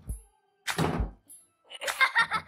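Two thuds over background film music: a small one at the very start and a louder, deep one about three-quarters of a second in.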